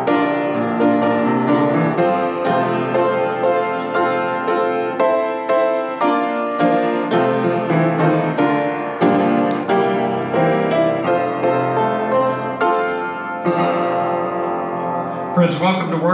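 A keyboard instrument playing a church prelude in held chords that change about once a second. Near the end the playing thins out and a man starts speaking.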